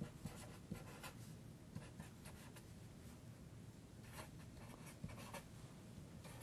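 Felt-tip marker writing on paper: faint, short scratching strokes, many of them in quick succession.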